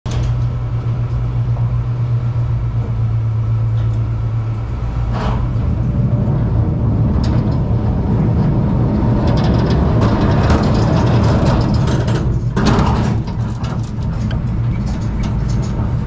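Kiddie roller coaster train heard from the front seat: a steady low mechanical hum at first, then the train rumbling and rattling along the track as it rolls out of the station and onto the chain lift hill.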